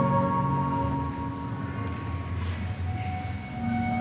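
Slow, calm Chinese traditional string-and-wind (sizhu) music with long held notes that change slowly, accompanying a group tai chi routine.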